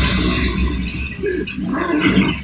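Film soundtrack of a battle scene: a creature's low growling roar over a deep, steady rumble, dipping about halfway through.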